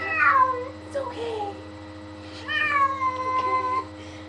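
Domestic cat meowing while being bathed in the tub: a short call falling in pitch at the start, a weaker one about a second in, and a long drawn-out meow in the second half.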